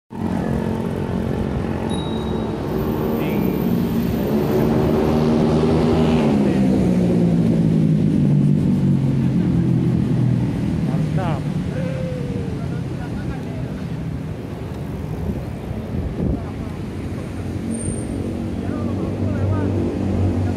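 A motor vehicle engine passing close by on the road, its pitch rising and then falling away over several seconds, over a steady low rumble of street noise.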